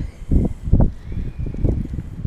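Strong gusty wind buffeting the microphone, a low uneven rumble that surges and drops.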